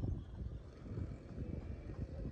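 Wind buffeting the phone's microphone: an uneven low rumble that rises and falls.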